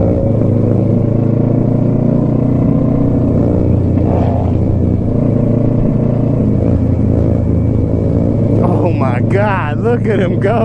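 Motorcycle engine running at a steady cruise, heard from the rider's seat, its pitch holding level with no revving. A voice comes in near the end.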